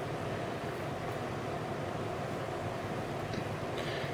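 Steady, even background hiss with no distinct events: room tone.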